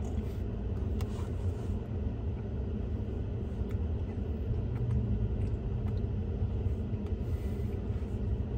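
Steady low rumble of a parked vehicle's engine idling, heard from inside the cab, with a few faint clicks.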